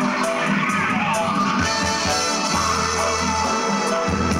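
Live dub band playing: brass, electric bass guitar and drums, with deep sustained bass notes in the second half and steady cymbal strokes.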